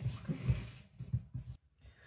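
Wet sourdough dough being worked by hand in a glass mixing bowl, tossed and slapped about: a few soft, dull thuds, which stop shortly before the end.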